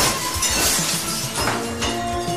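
Glass shattering: a sudden crash followed by a spray of tinkling shards, with a second smaller burst about a second and a half in.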